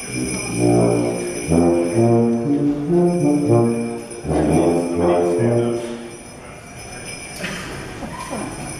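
Brass ensemble with two tubas playing a Christmas tune, the tubas carrying low notes under the other brass, with jingle bells ringing throughout. The brass playing stops about six seconds in, and the bells go on more quietly.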